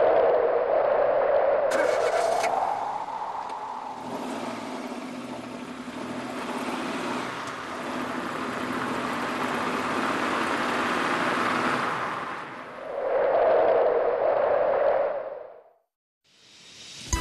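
A car engine running under a noisy rushing sound, loudest at the start and again near the end, then cutting out.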